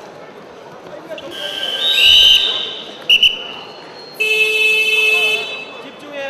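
A referee's whistle blows one long, wavering blast, then two short toots, stopping the wrestling. About four seconds in, a buzzer sounds steadily for about a second and a half.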